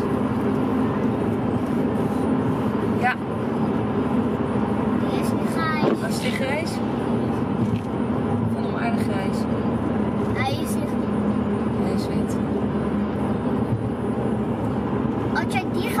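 Steady road and engine noise inside a moving car's cabin, with short snatches of voices now and then.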